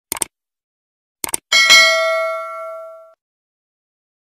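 Subscribe-button animation sound effect: a pair of quick mouse clicks, two more clicks about a second later, then a bright bell ding that rings out and fades over about a second and a half.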